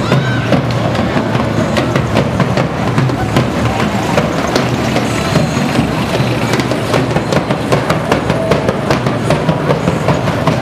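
Street parade din: percussion beating a steady, rapid rhythm over crowd voices, with motor vehicles passing close by.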